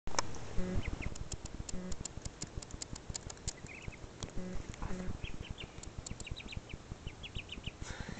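A baby duckling peeping: short high chirps, scattered at first and then in a quick run through the second half, with scattered knocks and rustles.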